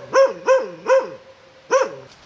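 A dog barking: a quick run of about four barks in the first second, a pause, then one more bark near the end.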